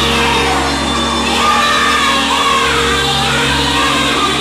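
Live gospel music: a woman singing into a microphone over steady held chords, with a crowd singing and shouting along.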